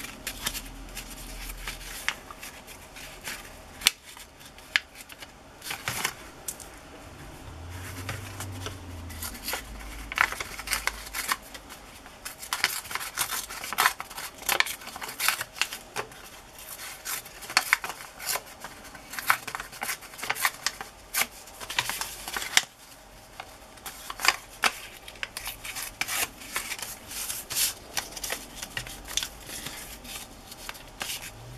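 Hands handling and tearing a sheet of patterned scrapbook paper: an irregular run of short rustles and rips of paper against a cutting mat.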